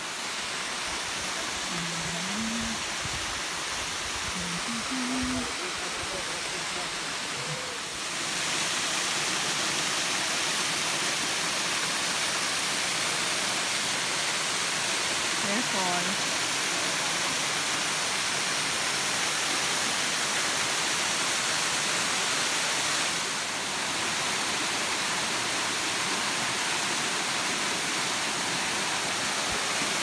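Waterfall pouring down a rock face into a pool: a steady rush of falling water, louder from about eight seconds in. Faint voices are heard under it early on and again about halfway.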